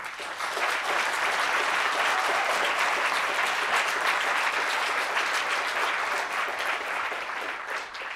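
Audience in a lecture hall applauding: many people clapping together, starting suddenly and easing off near the end.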